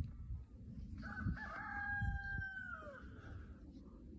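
A rooster crowing once: a single call of about two seconds, held on one pitch and dropping away at the end.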